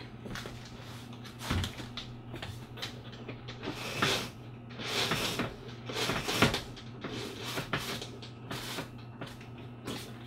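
A corded roller shade being pulled down over a motorhome windshield: a string of irregular rattling, scraping pulls on the cord and roller mechanism, loudest in the middle, over a steady low hum.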